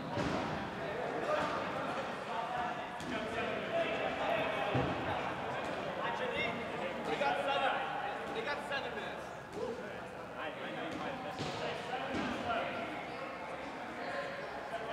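Indistinct voices of players talking across a large gym, with a few rubber dodgeballs bouncing on the hardwood floor.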